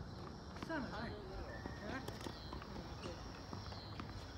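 A few light knocks of tennis balls being hit and bouncing on a hard court, with a voice calling out about a second in and a steady high buzz in the background.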